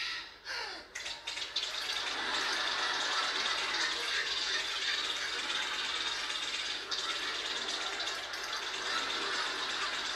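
Audience applause, coming in about a second and a half in and holding steady.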